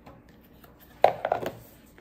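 Collapsible food storage container and its small stacking parts being handled. There is one sharp click about halfway through, followed by a few lighter clicks.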